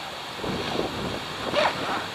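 Zipper of a Simms Taco wader bag being drawn closed, a ragged rasping run of the teeth that starts about half a second in.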